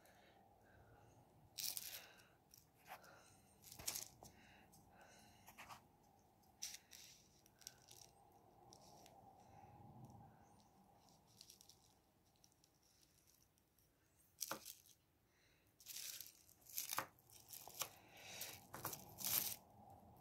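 Faint, scattered clicks and rustles as small plastic and metal parts of a model locomotive's motor bogie are handled and set down on bubble wrap, more frequent near the end.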